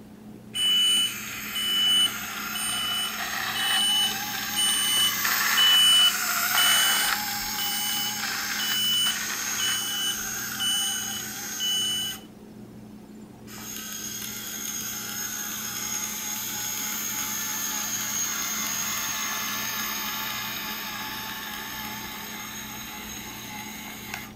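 Electric motors and plastic gears of a Lego Power Functions tractor-trailer whirring as it drives across a tile floor. Through the first half a high beep repeats about every two-thirds of a second. After a break of about a second, a steadier whir swells and fades.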